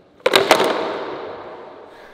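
Bongo board clattering on a concrete floor: a quick run of sharp knocks from the skateboard deck and roller, followed by a noise that fades away over about a second and a half.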